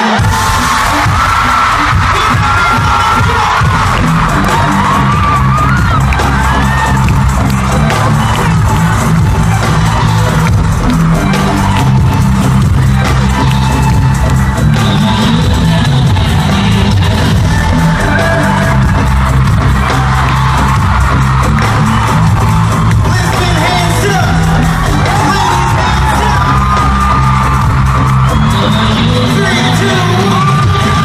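Live pop concert music over an arena sound system, loud and continuous, with a heavy, shifting bassline and a sung vocal line, as picked up by a phone in the crowd. Fans cheer and scream over the music.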